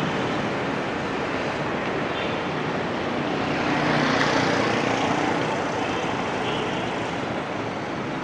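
Traffic on a city street: a steady wash of passing motorbikes and cars, swelling slightly about four seconds in as a vehicle goes by.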